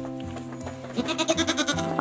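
A goat bleats once, a wavering call of about a second starting halfway through, over background music with steady held tones.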